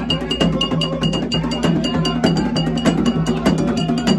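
Live percussion music: hand drums playing a fast, steady rhythm with a metal bell struck in a ringing pattern about four to five times a second.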